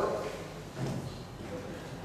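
Classroom room noise, a steady faint hiss, in a pause in a speaker's talk, with one brief faint low sound about a second in.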